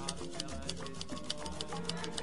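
Background music with a quick, steady beat of ticking percussion over a repeating bass line.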